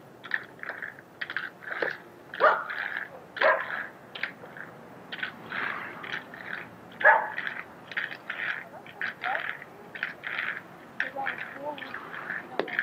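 Roller-skate wheels scraping and clattering on asphalt in short, irregular strokes as a child shuffles on skates, with a sharper knock about seven seconds in.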